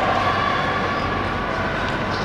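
Steady, echoing din of an indoor speed skating rink during a race, with faint voices in it.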